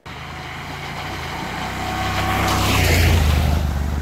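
Husqvarna Norden 901's 890 cc parallel-twin engine running as the motorcycle rides toward and past on a wet dirt track, growing steadily louder. A rush of noise comes in as it draws level, with the engine loudest near the end.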